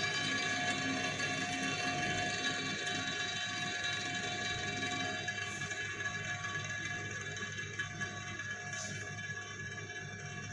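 Toy power spinner spinning on a glass tabletop, a steady many-toned whirring hum that slowly fades as it runs down.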